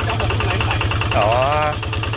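Engine of a paddy-field puddling tractor running steadily at a low speed, with an even, rapid clatter over its rumble.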